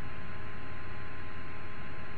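Steady background hiss with a faint electrical hum from the recording chain, unchanging, with no other sound.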